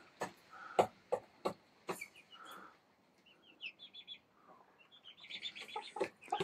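Young hens making soft, high chirping and trilling calls: a quick run of short notes about four seconds in and more just before the end. Scattered light clicks and knocks sound in the first two seconds.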